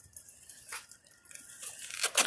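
Faint handling of a fabric cargo-bike side bag being opened by hand: soft rustling with a few light clicks.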